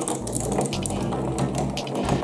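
Several glass marbles rolling and clattering down a cardboard marble run, rattling against the pins in quick clicks. Background music plays underneath.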